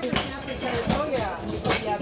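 Only people's voices: talking and calling out, softer than the loud speech around it.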